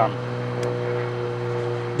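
A steady low hum made of a few fixed tones over a light hiss, unchanging throughout.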